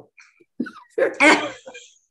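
A woman laughing: faint breathy sounds at first, then a louder burst of laughter about a second in that fades away.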